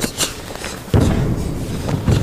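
A karate kata in motion: a couple of light snaps of the gi near the start, then a sudden heavy thud about a second in, with a low rumble after it, from the athlete's stamp onto the mat as he turns.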